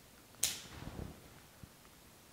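Floral shears snipping through a flower stem: one sharp snip about half a second in, followed by softer handling noise of the stem.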